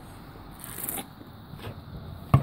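Faint handling noise: a short, high scraping rustle a little over half a second in, ending in a small click, with a softer tap near the end.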